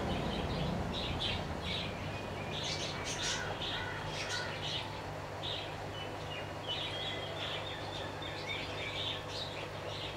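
Small birds chirping, many short high calls in quick runs, over a faint steady low hum.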